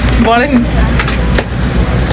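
Steady low rumble inside a passenger train carriage, with a brief voice about half a second in and a few light clicks.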